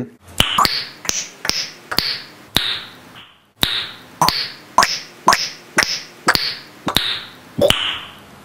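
A short chopped sound repeated about twice a second, with one brief gap about three seconds in: each repeat is a sharp click followed by a short fading hiss, like a clipped 's' sound looped in a stutter edit of the spoken word 'nice'.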